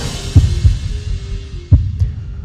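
Closing bars of a TV news theme: three deep bass thuds over a single held tone as the music dies away.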